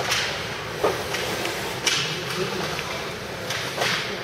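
Ice hockey play: skate blades scraping the ice and sticks striking the puck, about five sharp scrapes and clacks over a steady rink background.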